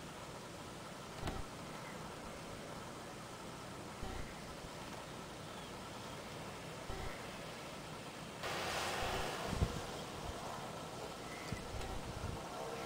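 Pickup truck driving slowly over snow, faint and distant at first with a few soft knocks; about eight and a half seconds in the sound jumps to a louder hiss as the truck is close by.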